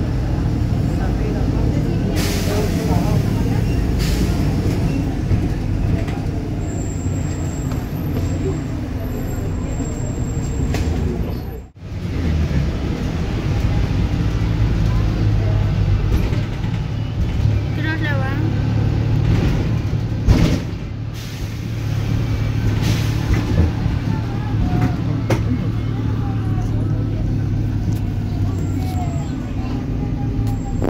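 Volvo B290R city bus engine running with a steady low drone, heard from inside the cabin. Short bursts of air hiss come from the air brakes early on, and there is a sharp knock about twenty seconds in.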